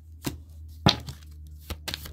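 Tarot cards being drawn and laid down on a table: a few short, sharp taps and knocks, the loudest about a second in.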